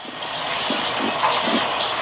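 A steady rushing noise with no clear pitch, starting suddenly and holding level throughout.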